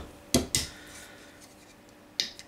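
Ring-pull of an aluminium beer can being cracked open: two quick sharp clicks about a third of a second in, the second followed by a short hiss of escaping gas.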